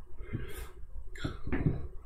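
A person's breath at the microphone, a soft exhale followed by a short throat or mouth sound, with no words.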